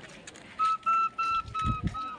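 A run of about five short, steady piping notes, all on the same high pitch, like a flute or whistle being blown in quick pulses. A couple of low thumps come near the end.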